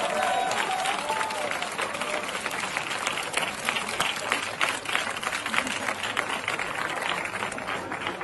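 Crowd applauding. A few voices call out in the first second or so, and the clapping then goes on dense and steady.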